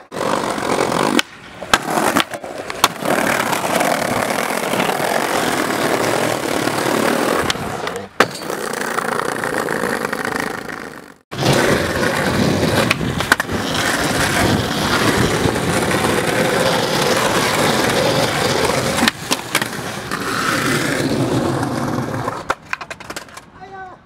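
Skateboard wheels rolling hard over brick and concrete paving, with sharp clacks of the board popping and landing now and then. The rolling drops out suddenly a few times and starts again.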